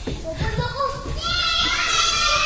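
Children's high-pitched voices calling out and chattering, louder in the second half.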